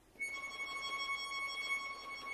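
Bayan (Russian button accordion) entering about a quarter second in with high notes held steady.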